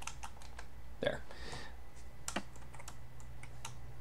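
Typing on a computer keyboard: a run of irregularly spaced keystrokes.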